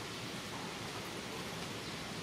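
Steady, even hiss of outdoor background noise, with no distinct sound standing out.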